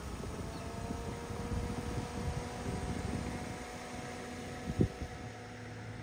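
A car driving along, heard from the car: steady road and engine noise with a faint, even whine. A single sharp knock comes a little before the end.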